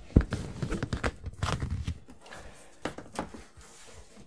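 Cardboard boxes being handled: a sharp knock as a box is set down, then cardboard scraping and rustling with scattered small knocks, thinning out in the second half.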